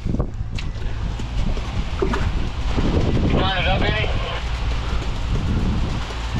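Steady low rumble of a concrete pump truck's engine running, with wind noise on the microphone and a brief voice a little past the middle.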